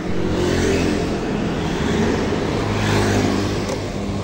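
Honda Scoopy scooter's small single-cylinder engine running steadily, starting abruptly out of silence.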